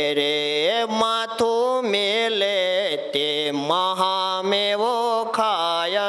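A man singing a Gujarati devotional bhajan, drawing out long, wavering notes in a slow melody.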